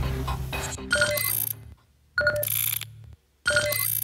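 Electronic TV transition sting: a series of sharp synthetic hits with bright, ringtone-like chime tones, about one every 1.2 seconds. Each hit cuts off into a brief near-silent gap. Together they cue the start of the song.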